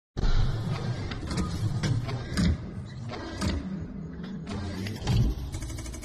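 Mechanical sound effects of an animated intro: a deep rumble under a series of sharp metallic hits and whirs, with a rapid run of ticks near the end.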